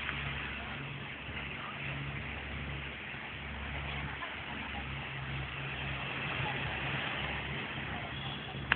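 A motor running steadily with a low hum that dips out briefly a few times, over a steady hiss.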